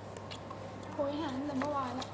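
A person's voice making a wavering, drawn-out vocal sound from about a second in, over a steady low hum.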